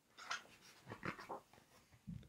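A man's faint, breathy 'choo' noises, a few short puffs imitating hares.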